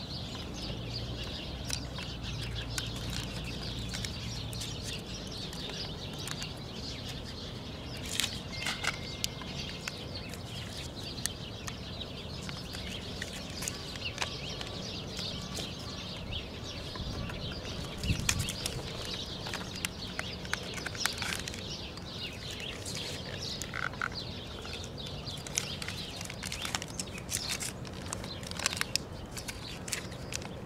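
Thick moisture-resistant tape being pulled off the roll and wrapped around a cable splice, giving irregular crackles and peeling clicks throughout.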